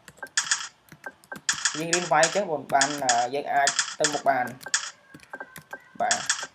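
Slow, irregular keystrokes on a computer keyboard, with a person's voice over much of the middle.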